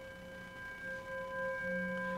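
A hand-held metal singing bowl ringing on after a single strike, several steady tones sustaining together.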